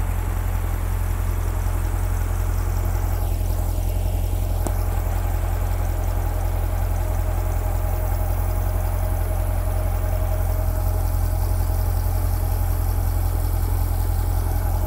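A 2020 Chevrolet Corvette Stingray's mid-mounted 6.2-litre LT2 V8 idling steadily, with one faint click about halfway through.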